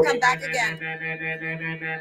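Livestock auctioneer's bid-calling chant over a PA, drawn out into a sing-song, near-monotone filler between bid numbers so that it sounds almost like singing.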